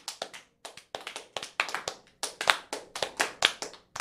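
A rapid, uneven run of sharp taps, about six a second, with a couple of short breaks.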